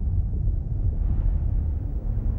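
Deep, steady low rumble from a movie trailer's soundtrack, a sustained bass drone with little high sound above it.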